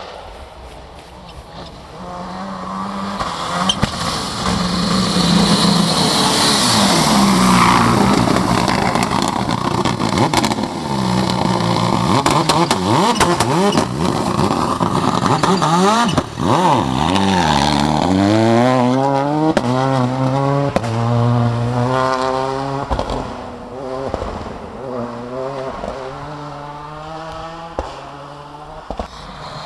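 Rally car engine revving hard on a gravel stage, pitch rising and falling through gear changes and lifts, with tyre and gravel noise; in the second half it accelerates away through a quick series of upshifts and fades.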